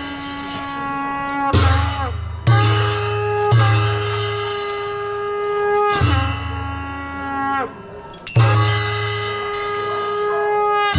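Traditional Newar ritual music for a masked dance: heavy strokes on large two-headed barrel drums with cymbal clashes, coming irregularly, under long held wind-instrument notes that sag in pitch at the end of each note.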